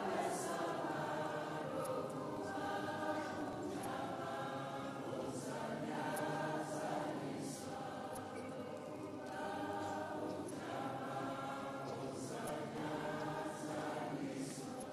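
A choir of many voices singing together in long held phrases, with short breaks between them.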